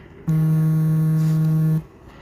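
A loud, steady, low buzzing tone that holds one pitch for about a second and a half, starting and stopping abruptly.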